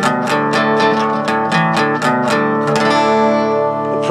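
Acoustic guitar strummed in a quick, even rhythm of about five strokes a second, then a final chord left to ring for the last second or so.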